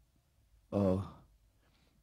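A man's single drawn-out hesitation 'aah', a voiced filler sound about half a second long that trails off breathily, about a second in.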